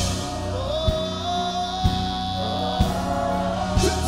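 Live gospel worship music: singers hold long sustained notes over the band, with a low drum hit about once a second.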